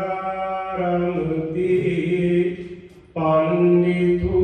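A Buddhist monk chanting Pali verses in a slow, drawn-out melody, holding each note. The chant breaks off for a breath after about two and a half seconds, then starts again.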